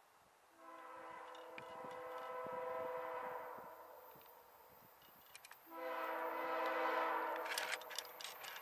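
Air horn of a CSX diesel freight locomotive sounding two long blasts, several steady notes at once; the first lasts about four seconds, the second, about two seconds long, comes louder as the train draws near.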